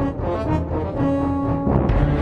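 Background music with long held low notes over a dense low bass.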